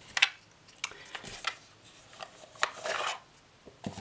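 Handling of a rigid cardboard tarot deck box and its cards: a sharp tap near the start, then several short rubbing, scraping swishes as the deck is taken out of the box.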